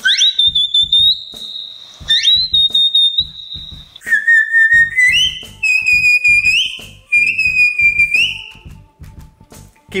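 Sheepdog herding whistle blown in a series of held, high whistles: two very high ones that each sweep up quickly and hold for about a second, then three somewhat lower ones, each held about a second and sliding up at the end.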